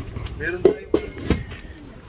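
A stainless steel pan lid clinking against its pan a few times as it is lifted and handled, with voices nearby.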